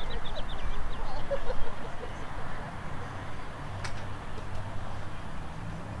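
Open-air stadium ambience: a steady low hum and a few faint distant voices. A small bird gives a quick trill of about ten high chirps right at the start, and there is a single sharp click about four seconds in.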